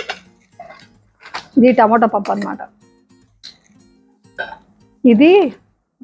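A woman speaking over quiet background music, with a few light clinks of stainless-steel lids being lifted off serving bowls.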